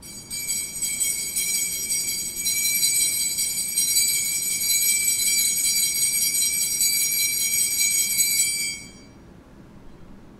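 Altar bells jingling in a steady high ring for about eight and a half seconds, then stopping fairly suddenly near the end. This is the ringing that marks the elevation of the consecrated host at Mass.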